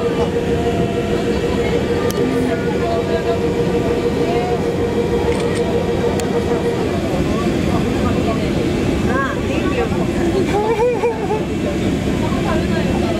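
Steady machinery rumble and hum inside a tourist submarine's cabin, with a level tone that stops about seven seconds in. Passengers' voices are faintly heard near the end.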